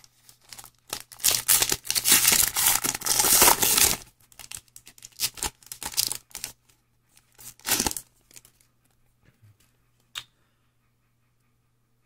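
Foil wrapper of a football trading-card pack being torn open and crinkled: a long tearing, crinkling stretch in the first few seconds, then scattered rustles and one more crinkle near eight seconds.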